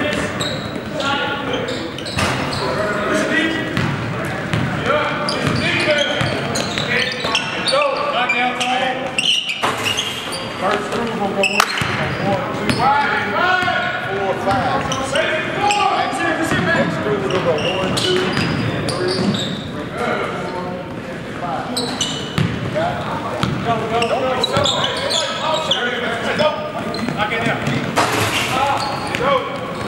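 Live basketball game in a large gym: the ball bouncing on the hardwood amid players' indistinct calls and shouts, all echoing in the hall.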